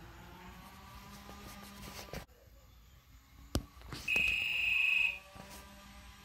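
A Minn Kota Talon shallow-water anchor gives one steady, high-pitched electronic beep about a second long, about four seconds in. The beep signals that the Talon has paired with its wireless foot switch. A short click comes just before it.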